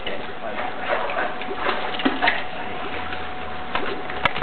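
Faint, indistinct voices over a steady background hiss.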